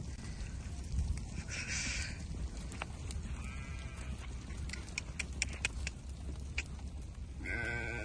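Harri sheep ewes bleating: a faint bleat about three and a half seconds in and a louder one near the end. Scattered sharp clicks fall in between, over a steady low rumble.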